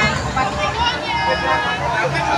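Crowd babble at a busy open-air food market: many people talking at once, none clearly, over a steady low rumble.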